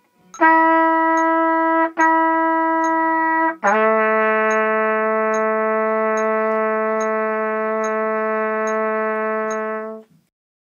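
Trumpet played by a beginning student: two notes at the same pitch, then a lower note held for about six seconds, played as a fingering exercise. Faint even clicks tick along a little more than once a second.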